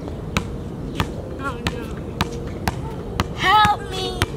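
A basketball being dribbled on an outdoor court: sharp single bounces at uneven intervals, roughly half a second to a second apart. A short voice sound comes about one and a half seconds in, and a louder voice calls out near the end.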